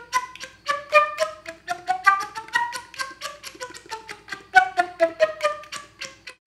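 Slap-tongued flute notes: a quick run of short, popped notes, about five a second, climbing in pitch and then coming back down. A little air is pushed with each slap, which gives the notes a fuller tone.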